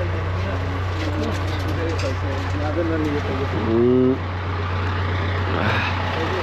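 People talking, with one voice drawn out loudly about four seconds in, over a steady low hum.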